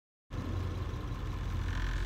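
Steady low rumble of engine and road noise inside a moving vehicle's cabin. It starts abruptly about a third of a second in.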